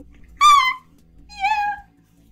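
Two high, squeaky laughing squeals from a person, the first louder and sliding down a little, the second lower and wavering.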